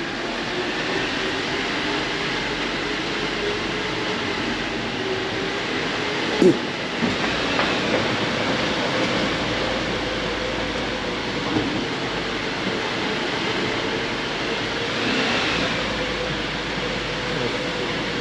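Lifted Jeep on 37-inch tyres creeping through a narrow rock mine tunnel: a steady engine and tyre rumble, with one short knock about six seconds in.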